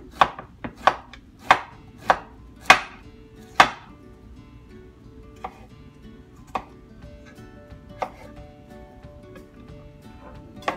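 Kitchen knife chopping vegetables on a wooden cutting board: sharp knocks about twice a second for the first four seconds, then slowing to a few single strokes a second or more apart.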